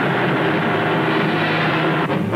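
Bell 47 helicopter in flight, its engine and rotor making a steady noise.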